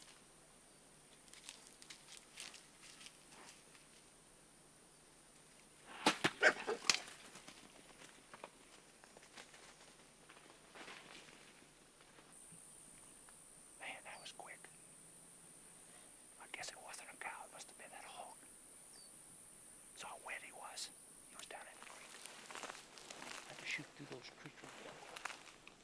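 A quick cluster of sharp knocks and crackles about six seconds in, then scattered soft rustling and footsteps in brush with quiet whispered voices.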